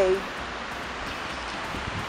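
Strong wind blowing across the microphone on a beach, a steady even rushing noise.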